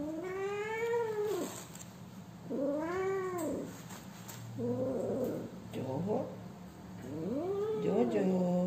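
Cat yowling as it is handled: about five long, drawn-out calls in a row, each rising and then falling in pitch.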